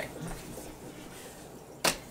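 Faint room tone, broken near the end by one short, sharp smack.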